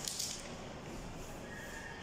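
Faint rustle of notebook paper as a page is turned over and pressed flat by hand.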